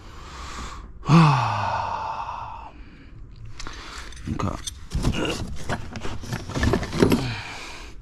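A man's long groaning sigh about a second in, falling in pitch. It is followed by a string of clicks and knocks as hard plastic trailer parts are handled and pulled free, with a couple of short grunts.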